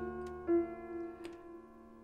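Background score of sustained held notes, a brighter note entering about half a second in, with two clock-like ticks about a second apart.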